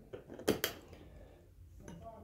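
Small metal hand tools being handled: two light, sharp metallic clicks about half a second in, and one more near the end.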